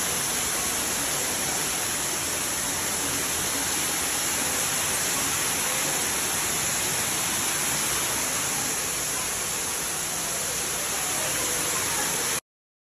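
A sheet of water pours down a glass wall and splashes into a shallow basin, making a steady, even rush of falling water.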